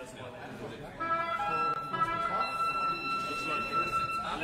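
A murmur of voices, then about a second in, music starts over it: sustained instrument notes, one high note held for more than two seconds.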